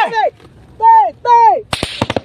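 A man gives two short, loud shouts that fall in pitch. Then, near the end, a quick burst of several sharp gunshots is fired close by.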